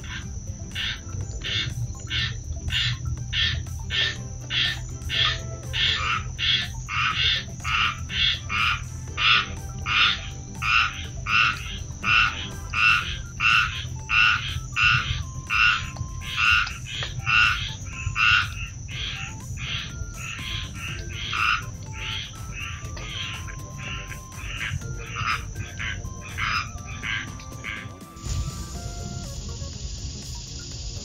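An animal call repeated in a steady rhythm of about one and a half calls a second, swelling to its loudest in the middle and then fading, over a steady high-pitched whine. Both break off abruptly near the end and give way to a hiss.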